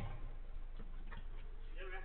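Scattered light taps and ticks of a football game on artificial turf: players' footsteps and ball touches, with a man's voice calling out briefly near the end, over a steady low hum.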